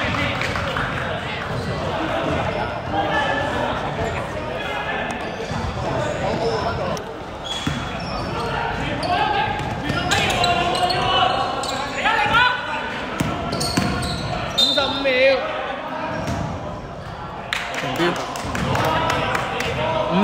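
Players' voices echoing in a large indoor sports hall, with a basketball bouncing on the court floor now and then.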